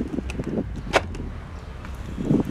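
A knife knocking once, sharply, about a second in, over a low steady rumble.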